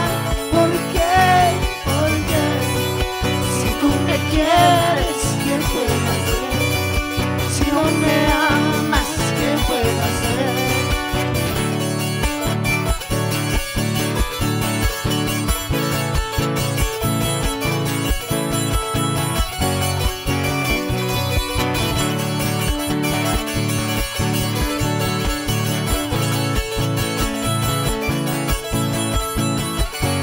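Live Andean band music: a charango and guitar playing a lively tune over a steady, evenly spaced beat.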